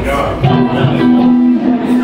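A live band's guitar coming in with one held note about half a second in, over chatter from the room.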